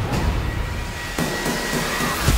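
Action-film sound effects mixed over music: a low rumble of an explosion and burning wreckage, with a held high tone and a sudden hit a little over a second in.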